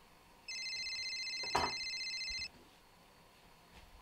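A phone ringing: one electronic trilling ring lasting about two seconds, starting half a second in, with a single sharp knock partway through it.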